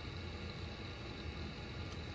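Steady low hum with a faint even hiss, unchanging room tone with no distinct events.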